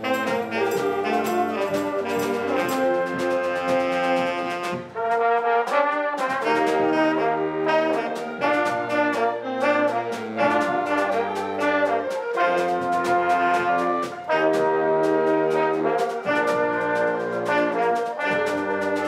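School band of saxophones, trombone, low brass and drum kit playing a tune together: sustained horn chords over a steady drum beat.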